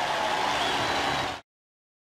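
Ballpark crowd applauding, a steady wash of clapping and cheering heard through the TV broadcast, cut off abruptly about one and a half seconds in.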